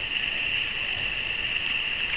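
A steady high-pitched hiss that holds at one level throughout, with no other distinct sound.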